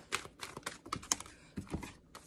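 A deck of oracle cards being shuffled by hand: a rapid, irregular run of crisp card clicks and flicks that thins out toward the end.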